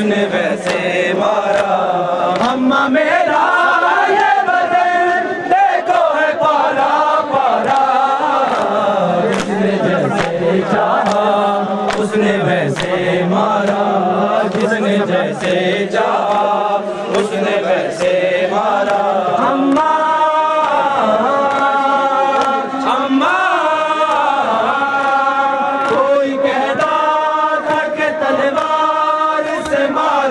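Men chanting a Punjabi-Urdu noha (mourning lament) together, voices holding long, bending notes, with sharp chest-beating slaps (matam) scattered throughout.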